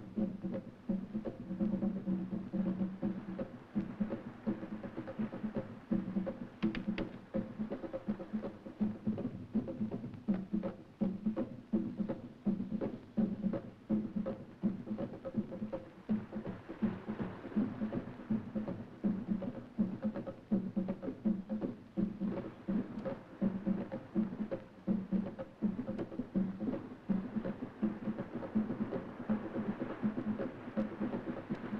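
Steady, fast drumming in a repeating rhythm, with a low ringing tone held beneath the strokes.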